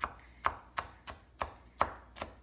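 Kitchen knife dicing an onion on a wooden cutting board: about five sharp knocks of the blade on the board, unevenly spaced, a little over two a second.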